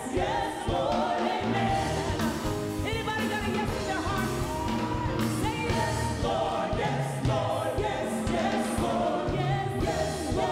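Live gospel worship song: a female lead singer and a team of backing singers singing together over band accompaniment with a steady beat.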